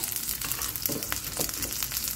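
Shallots, garlic cloves and green chillies sizzling in hot oil in a steel kadai, a steady hiss with scattered crackles of spitting oil.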